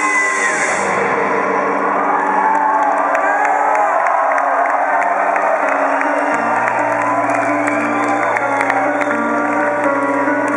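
Live rock band playing sustained held notes, heard from within a cheering crowd with whoops. The high cymbal wash drops away under a second in, and a deep bass note comes in about six seconds in.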